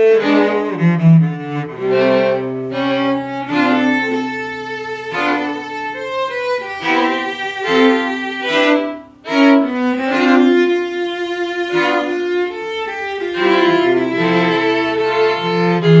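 A string quartet of violins and cello playing a slow, sustained passage together, with a brief pause about nine seconds in before the next phrase begins.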